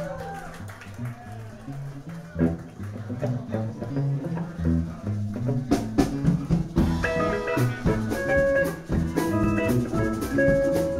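A live band playing: electric guitars and bass over a drum kit. The drums grow stronger about six seconds in, and clear picked guitar notes come through near the end.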